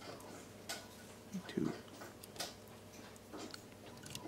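Faint, scattered clicks and ticks of a wire end being fed into a contactor's screw terminal and a screwdriver being set on the terminal screw.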